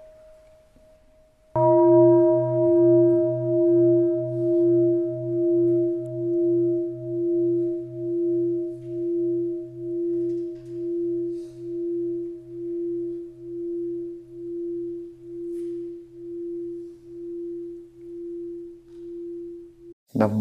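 A large Buddhist bell is struck once about a second and a half in, after the fading tail of an earlier stroke. It rings with a deep hum and several higher tones, pulsing a little over once a second as it slowly dies away.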